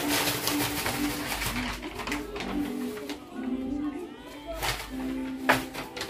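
Paper entry slip rustling as it is unfolded and handled, over soft background music with repeated low notes.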